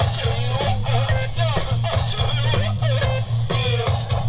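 Music with a heavy, repeating bass line, a steady drum beat with crisp cymbal hits, and a guitar part.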